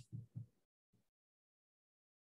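Near silence: two faint, short low thumps in the first half-second, then dead silence.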